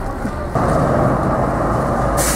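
Street traffic noise dominated by a tram running past, a steady low rumble that grows louder about half a second in.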